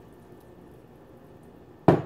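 Faint steady background hiss, then near the end a sharp clink of kitchenware knocking together, glass or metal on the pan or counter.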